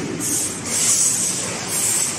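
Metal balls rolling along the steel tracks of the Energy Machine kinetic ball-run sculpture: a continuous rolling rush with a high hiss that swells and fades several times.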